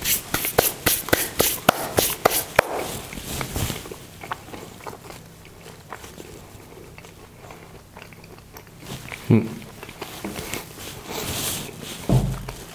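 Close-up chewing of a mouthful of panforte, a dense cake studded with whole toasted almonds, with quick crunches of the almonds in the first few seconds and then quieter chewing. There is a single thump about nine seconds in.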